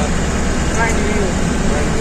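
Bus engine idling with a steady low rumble, heard from inside the passenger cabin.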